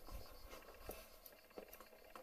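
Near silence with a few faint, light clicks from a scoped rifle being handled at its breech, over a low rumble.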